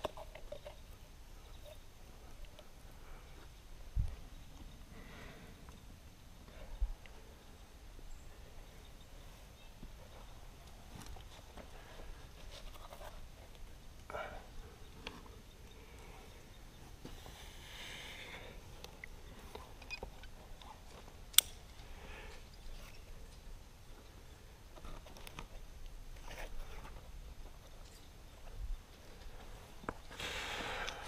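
Faint, scattered scuffs and knocks of a climber's hands and shoes moving on sandstone holds, with two dull thumps early on and one sharp click about two-thirds of the way through.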